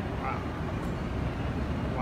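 Steady low rumble of airport terminal background noise, with a brief faint distant voice about a quarter second in.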